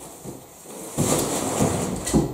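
Cardboard rustling and scraping as boxed LEGO sets are handled against a large cardboard shipping box, with a few knocks. The noise turns loud and dense about halfway through.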